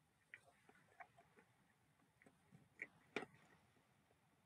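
Faint mouth sounds of a person eating a spoonful of peanut butter cup ice cream: a few soft, irregular smacks and clicks of chewing, the loudest a little after three seconds.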